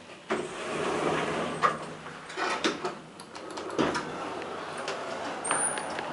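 ASEA traction elevator's automatic car doors sliding open, starting suddenly about a third of a second in. Several sharp knocks and clunks follow.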